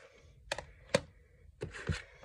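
Plastic DVD and Blu-ray cases and a metal steelbook being handled on a stack: about four sharp clacks, the loudest about a second in, with rubbing and sliding between them.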